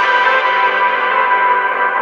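Electronic dubstep track in a beatless passage: a sustained, bell-like synth chord, its high end gradually filtered away.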